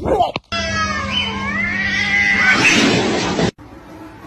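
A cat's drawn-out caterwaul, wavering up and down in pitch for about three seconds over a steady low hum, cut off abruptly near the end.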